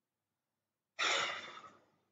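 A man's audible breath into a close microphone, starting about a second in and fading out within under a second.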